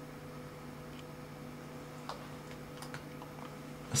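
A few faint, irregularly spaced computer-mouse clicks over a low, steady electrical hum.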